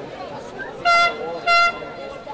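A horn sounding two short, loud blasts about half a second apart, each a steady single note.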